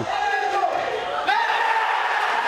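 A long, held celebratory shout over stadium crowd noise as a football penalty kick is scored. The shout dips and breaks about a third of the way in, then picks up again higher and is held steady.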